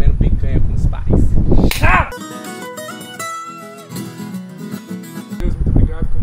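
Acoustic guitar music, plucked notes, playing alone for about three seconds in the middle. Before and after it, a low outdoor rumble like wind on the microphone, with faint voices in the first two seconds.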